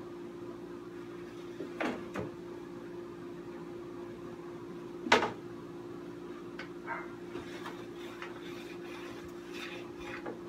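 Ski edge scraper drawn along the steel edge of a ski in a few short, separate strokes, the loudest about five seconds in, over a steady low background hum.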